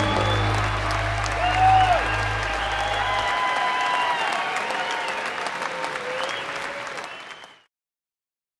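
Concert audience applauding at the end of a live song, with the band's last low held note dying away about three seconds in. The applause fades out to silence near the end.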